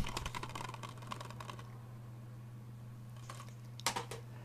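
Plastic Blu-ray case being handled and turned over: a run of faint light clicks and crackles in the first second and a half, then a sharper click just before the end, over a steady low hum.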